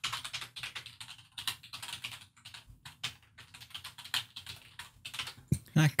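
Computer keyboard typing: a dense, irregular run of quick keystrokes as values are entered into software fields.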